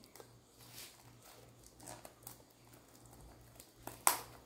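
Near silence: faint room tone with a steady low hum and a few soft clicks and rustles from a small wrapped package being handled and opened.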